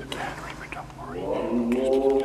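Voices chanting in long held notes; the chant falls away about half a second in, and a new held chord swells back in near the end.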